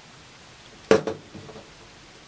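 A single sharp knock about a second in, as hands handle an LED matrix panel, followed by a short fading tail.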